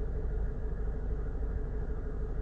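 Steady low rumble with a faint constant hum underneath, unchanging throughout.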